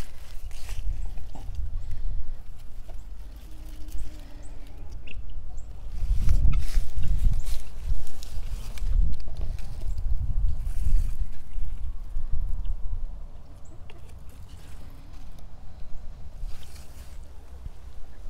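Uneven low rumble of wind and handling on a phone microphone, swelling in the middle, with light rustling of tomato foliage as a hand moves through the plants.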